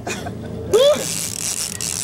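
A man laughs briefly, then a fishing reel's drag gives a high, steady buzz for about the last second as a hooked muskie pulls line off against it.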